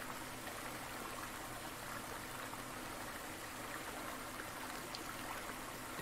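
Faint, steady rush and babble of a mountain stream running over rocks, from a nature recording played back and picked up through the microphone.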